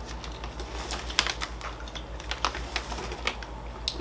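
Plastic snack packaging being handled, crinkling in scattered soft clicks and crackles over a low steady hum.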